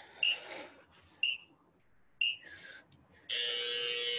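Workout interval timer counting down: three short beeps a second apart, then a long steady buzzer starting about three seconds in, marking the end of the Tabata work interval.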